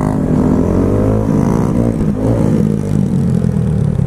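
Honda Grom single-cylinder 125 cc motorcycle engine running under way, its pitch rising and falling a little with the throttle, over steady wind noise.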